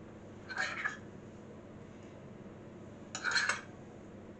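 A metal teaspoon scraping and clinking against a small glass dish of jam in two short bursts, about half a second in and again about three seconds in.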